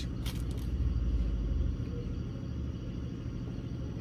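Low, steady rumble of a car engine running, heard inside the car's cabin, easing off a little about two seconds in.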